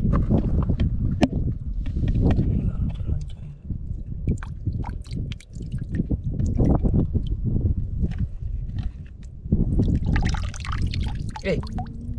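Hands sloshing and splashing in a shallow tide pool, with water dripping and trickling in a run of small sharp splashes.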